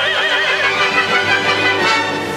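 Operatic duet: soprano and tenor singing in bel canto style with wide vibrato on held notes, over a steady low accompaniment.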